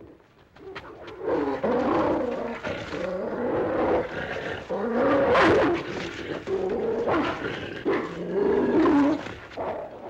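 A large dog snarling and growling in repeated rough bouts as it attacks, starting about a second in.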